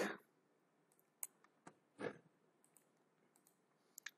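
A few faint, sharp computer mouse clicks, about a second and two seconds in, over near silence.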